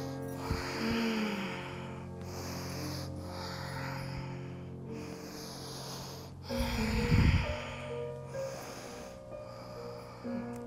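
Soft background music with held notes, over repeated breaths in and out, a new breath every one to two seconds. About six and a half seconds in, a louder low rumble, like rustling on a clip-on microphone, lasts about a second.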